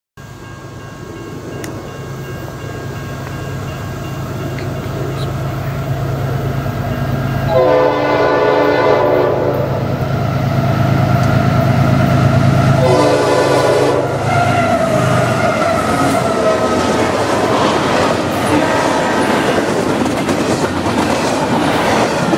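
Diesel freight locomotives approaching and growing steadily louder, sounding the air horn twice: a long blast about 7.5 s in and a shorter one about 13 s in. The engine note drops as the locomotives pass, and double-stack intermodal container cars follow, rolling by with steady wheel clatter.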